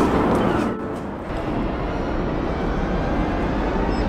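Fabric rubbing and rustling against a phone's microphone while the phone is carried pressed against a sweater: a muffled, steady noise with a brief dip about a second in.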